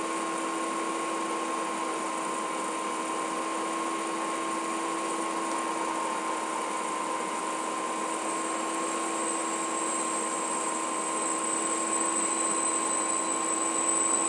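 A steady machine-like hum with a constant whine in it, joined by a high thin whistle that grows louder over the last few seconds.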